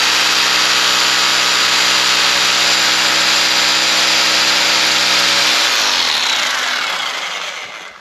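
Einhell TC-RH 800 4F rotary hammer in hammer-drill mode, running steadily at full speed as a 10 mm bit drills into a concrete floor, going in easily without strain. After about five and a half seconds it winds down, its pitch falling as it slows to a stop.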